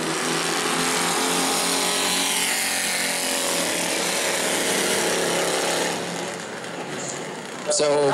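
A field of Bomber-class stock car engines at full throttle just after a green-flag start, many engine notes overlapping as the pack races. The sound drops off somewhat about six seconds in as the cars move away.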